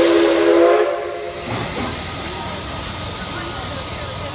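A steam locomotive's whistle blows loudly until about a second in, then the steady hiss of steam from the D51 200 steam locomotive as it pulls slowly out of the platform.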